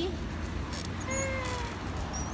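A toddler's short, high-pitched "ah", falling slightly in pitch, about a second in, over a steady low background rumble.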